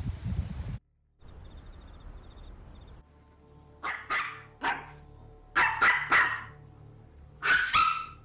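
A dog barking repeatedly, in four short bouts of one to three sharp barks.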